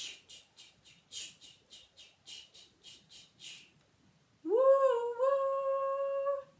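A woman imitating a steam train with her mouth: a string of about a dozen short hissing 'ch' puffs, three or four a second, then about four and a half seconds in a loud vocal 'woo-woo' train whistle held on one note.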